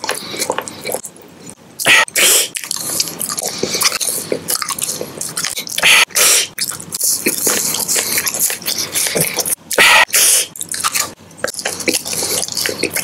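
Close-miked eating sounds: a chocolate lollipop being bitten and chewed, then a soft sugar-coated marshmallow being bitten. Wet mouth clicks and smacks are dense and irregular throughout, with a few louder bursts.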